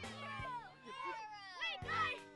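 A group of children shouting excitedly in high voices that swoop up and down, over background music with steady low notes.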